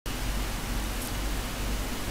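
Steady, even hiss with a low hum beneath it.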